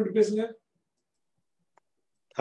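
A person's voice for about half a second at the start, then silence broken only by one faint click near the end.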